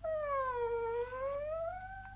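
Creaking-door sound for a door swinging open: one long whining creak that dips in pitch and then climbs again before cutting off.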